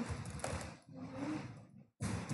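Computer keyboard typing: a run of soft, irregular key clicks.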